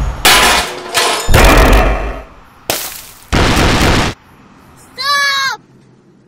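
Car-crash sound effects: four loud smashing bursts of impact and breaking, one after another. About five seconds in, a short high-pitched cry in a girl's voice.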